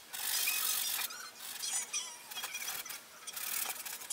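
Bristle brush scrubbing thin, turpentine-diluted paint across a stretched canvas in a run of quick strokes, the bristles squeaking against the weave. The longest and loudest stroke comes in the first second, followed by three or four shorter ones.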